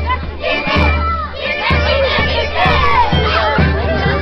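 A crowd of children shouting and cheering, many voices overlapping, over music with a low, pulsing beat.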